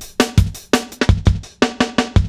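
Chopped breakbeat drum loop playing at a jungle tempo of 168 BPM: a quick run of kick and snare hits, about five or six a second. A low-pass filter takes off only the highest highs.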